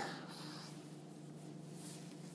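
Faint steady background hiss with a low hum, as the last spoken word trails off at the start.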